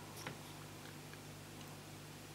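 Light ticks of a fine paintbrush working wet putty on a model tree trunk, the clearest about a quarter second in, over a faint steady low hum.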